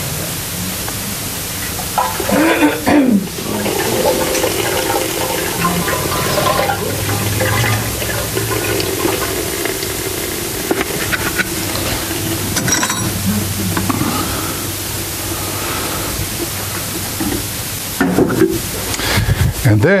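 Liquid ice cream mix poured from a plastic bucket into the stainless-steel hopper of a batch freezer, a steady pour lasting several seconds over a low hum.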